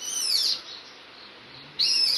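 Civet giving high-pitched calls: a scream that slides down in pitch over about half a second, then a second call starting near the end. The calls are a mother civet calling for her lost young.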